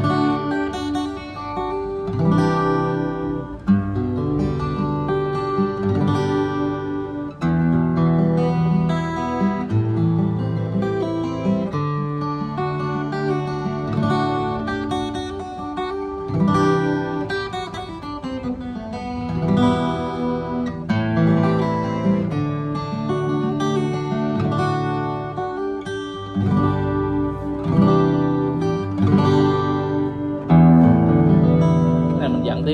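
Enya EGA-X1 Pro acoustic-electric guitar played through an amplifier speaker: arpeggiated chords that ring on, moving to a new chord every couple of seconds.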